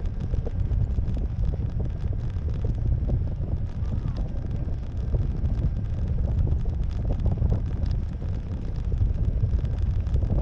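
Wind buffeting the microphone of a camera on a parasail harness high above the sea: a steady, dense low rumble.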